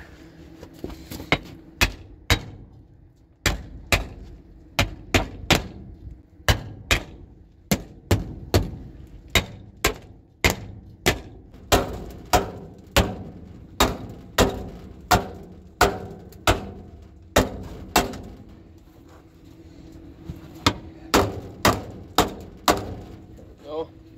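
Hammer blows on the galvanized steel clean-out panel under a grain dryer: dozens of sharp metallic strikes, about two a second, in runs broken by a few short pauses, knocking at a panel that is probably frozen a little.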